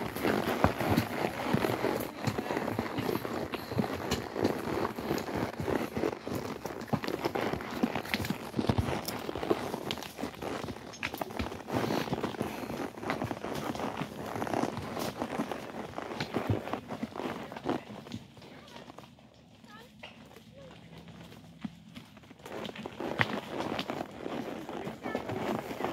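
Horses walking along a leaf-littered dirt trail: irregular hoofbeats with close rustling and jostling, quieter for a few seconds near the end.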